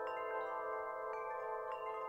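Soft chimes ringing in a song's quiet opening. Bright notes are struck at irregular moments, a few a second, each ringing on and overlapping the others.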